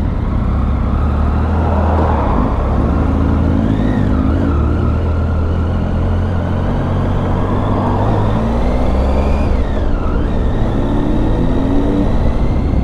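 2013 Triumph Tiger 800's three-cylinder engine running under way at town speed, its note rising twice, about three seconds in and again over the last few seconds, over steady road noise.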